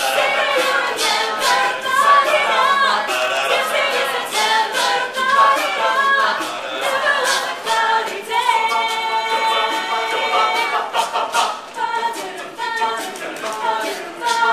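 Mixed-voice a cappella group singing in close harmony, with a regular percussive beat kept by voice. A little past halfway the voices hold one long chord before the moving parts resume.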